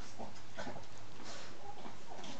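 Shih Tzu dogs making several short, soft vocal sounds, spaced roughly a half second apart.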